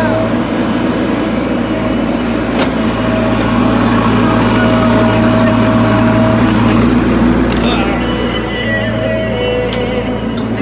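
JCB backhoe loader's diesel engine running steadily, a continuous low hum that swells slightly in the middle.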